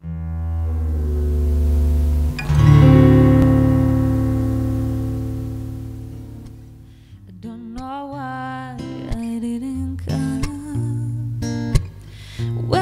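Acoustic guitar chords played and left to ring, a louder chord about two and a half seconds in slowly fading away. From about halfway a wordless voice with vibrato comes in over soft guitar notes, leading into the song.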